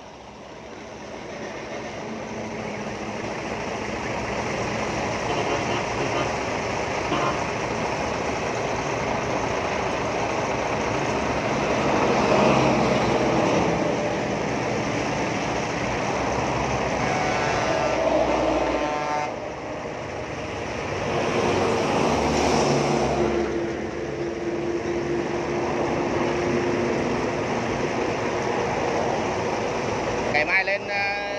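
Road traffic passing close by: a steady rush of engine and tyre noise that builds over the first few seconds. It swells several times as vehicles go past and briefly drops away about two-thirds of the way through.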